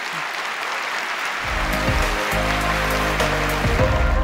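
Audience applause, joined about a second and a half in by closing music with low sustained notes that grows to be the loudest sound.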